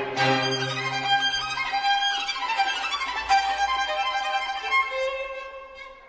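Violin music: sustained bowed notes with a falling run in the middle, growing softer near the end.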